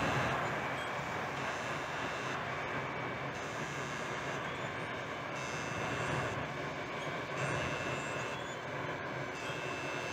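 Steady low rumble of large machinery with an even hiss over it, swelling slightly twice in the second half.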